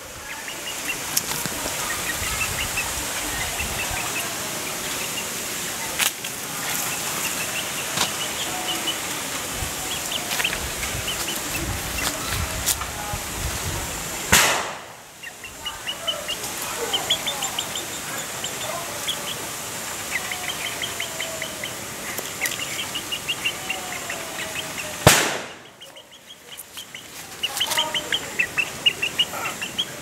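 Chickens calling: runs of rapid, high-pitched peeps and some longer gliding calls over a steady background hiss, broken by two loud sharp clicks, one about halfway through and one near the end.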